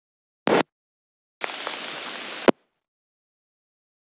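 Recording audio cutting in and out: dead silence broken by a short loud crackle about half a second in, then about a second of hiss that stops abruptly with a click.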